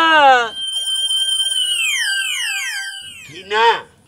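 Comic electronic sound effect: a warbling, siren-like tone with a string of high tones sliding downward one after another, lasting about two and a half seconds. It starts just after a man's falling voice and is followed by a short spoken word near the end.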